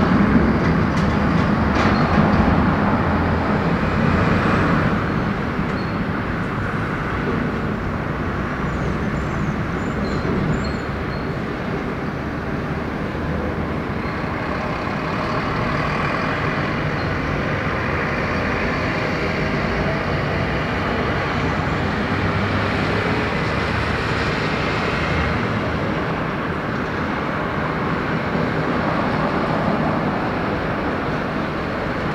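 Airbus A380's four jet engines rumbling as it climbs away, easing slightly over the first few seconds and then holding as a steady distant rumble.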